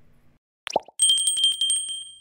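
Subscribe-button animation sound effects: a click and a short falling 'plop' about two-thirds of a second in, then a small notification bell rung in a rapid trill of about a dozen strikes a second from about one second in, its ring fading just after.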